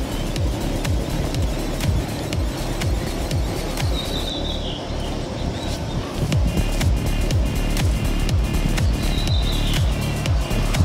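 Background music with a steady beat and a short high falling tone that comes back about every five seconds.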